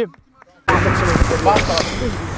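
Brief near silence, then about two thirds of a second in the live pitch-side sound cuts in suddenly: a steady rush of outdoor noise with a low hum and faint players' voices.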